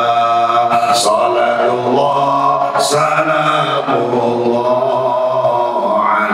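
A man's solo voice chanting sholawat, Islamic devotional praise of the Prophet, into a microphone, holding long wavering notes.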